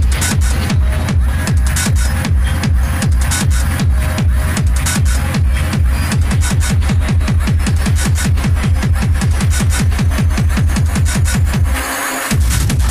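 Hard techno played in a DJ mix: a fast, steady four-on-the-floor kick drum under dense percussion. The kick cuts out briefly near the end.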